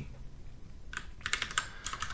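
Keys being pressed on a computer keyboard: a quick run of clicks starting about halfway through. This is Ctrl+C being pressed to break the running BASIC program.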